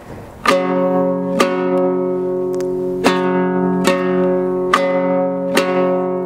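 Two-string Kazakh dombra strummed with the basic down-up beat: six strokes, each ringing on into the next, the same chord held throughout.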